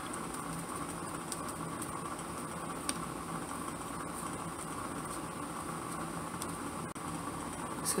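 Steady low room hiss, with a few faint light taps and rustles as lace trim is pressed down onto glued paper by hand.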